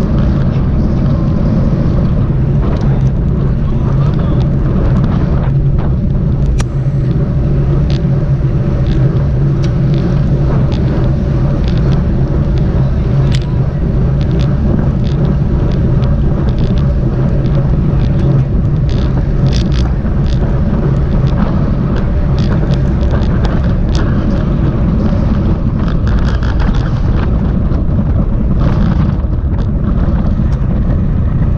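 Wind rushing over the microphone of a camera on a moving road bicycle, with a steady low rumble of tyres on asphalt and many short sharp clicks scattered throughout.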